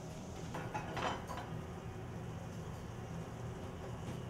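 Restaurant kitchen at work: a steady low hum with a few short clatters of metal pans and utensils about a second in.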